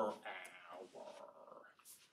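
A man's voice ending the word "hour" and trailing off into a low, drawn-out sound, followed by a short breathy hiss near the end.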